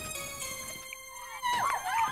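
Opening theme music of a children's TV show, with sustained held tones. In the last half second a wavering squeal slides up and down over the music and the level rises.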